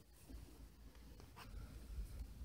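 Faint scratchy rustle of a metal crochet hook drawing yarn through the stitches, with a couple of soft ticks about one and a half seconds in.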